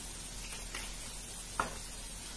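Onions and apples cooking in butter in a frying pan, sizzling softly and steadily, with a couple of faint light taps.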